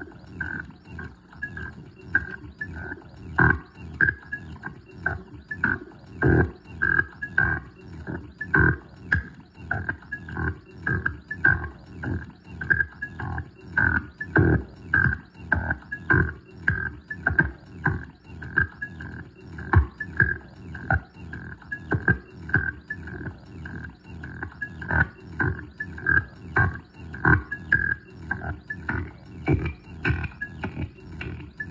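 No-input feedback loop run through a chain of guitar effects pedals (Hotone tremolo, Boss SL-2 Slicer, Alexander Pedals Syntax Error), chopped into a fast, uneven pulse of distorted, grunt-like bursts about two a second, with a high whining tone cut up in the same rhythm.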